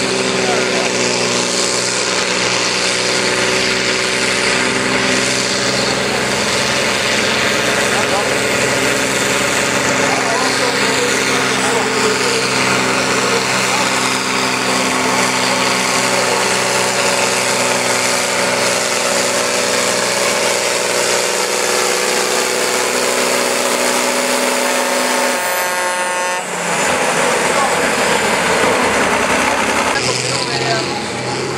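Diesel engines of farm tractors at full load pulling a weight-transfer sled. One engine holds a steady, loud drone, then near the end a sudden change brings in a second tractor's engine under load.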